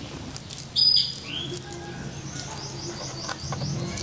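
Birds chirping: a short, loud, high call about a second in, then a quick run of repeated high chirps in the second half.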